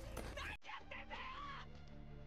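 Anime soundtrack playing: a character's voice speaking Japanese over background music, with an abrupt edit cut about half a second in.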